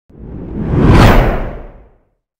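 A single whoosh sound effect with a low rumble underneath, swelling to a loud peak about a second in and then fading away.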